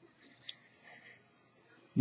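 Faint rustle of poly/cotton broadcloth being handled and pulled open at a serged seam, with a small tick about half a second in.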